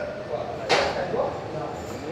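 Indistinct talking, with a short sharp hiss about three-quarters of a second in.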